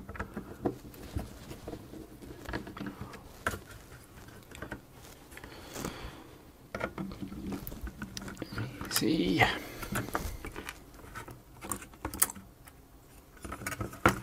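A hand screwdriver undoing small screws from a Sinclair ZX81's circuit board, then the board being lifted out of its thin plastic case: scattered clicks, taps and scrapes of metal and plastic being handled, busiest around nine seconds in.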